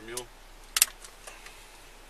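A single brief, sharp click or clink a little under a second in, much louder than the quiet background around it.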